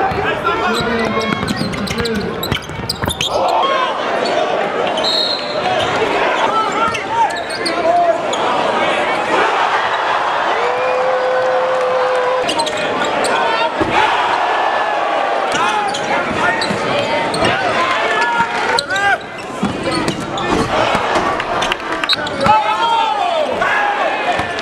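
A basketball being dribbled on a hardwood gym court, under the steady hubbub of a packed crowd's voices and shouts.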